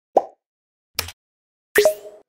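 Three short pop sound effects about 0.8 s apart, the last one a little longer with a brief rising swish, marking on-screen buttons popping into view in an animated end screen.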